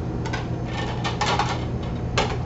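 Ceramic dishes clinking and clattering as a plate is taken from a stacked shelf: a run of light knocks and clinks, busiest about a second in, over a steady low hum.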